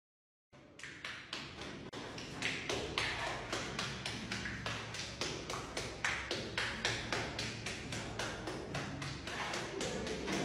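A bare hand patting wet wall plaster over and over, a quick run of soft taps several times a second, as the palm presses and lifts to raise a cracked relief texture.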